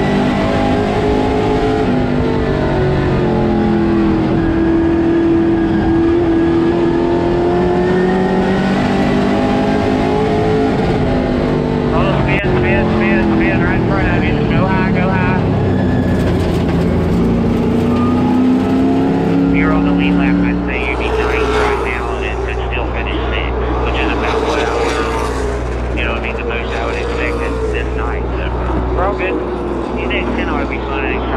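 In-car sound of an Outlaw Late Model race car's V8 engine under race load, its pitch swelling and sagging with each straight and corner. About twenty seconds in, it gives way to a steady low hum with voices and passing race cars heard from the grandstand.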